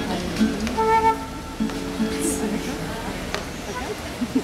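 Transverse flute playing held notes with an acoustic guitar, with a clear sustained note about a second in.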